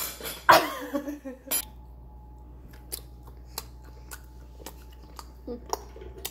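Laughing in the first second and a half, then a string of light, irregular clicks and taps of kitchen utensils and dishes, about one or two a second, over a faint steady hum.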